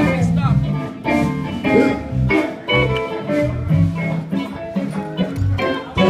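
Live blues band playing, led by electric guitar.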